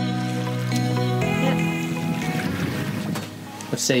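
Background music with long held tones that thins out over the first couple of seconds, giving way to the wind and water noise of a sailboat under way. A voice speaks briefly at the end.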